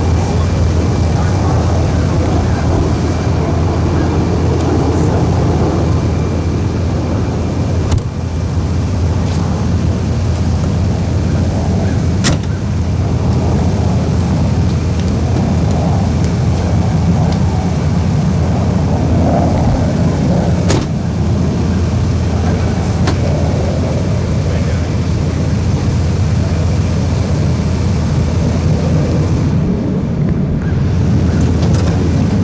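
A limousine's engine idling with a steady low rumble, and a few sharp clicks scattered through it.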